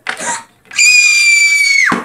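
A child's high-pitched scream, held for about a second and falling in pitch as it cuts off, after a short breathy sound at the start.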